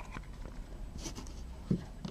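Faint rustling and a few light clicks of trading cards being handled, over a low steady room hum.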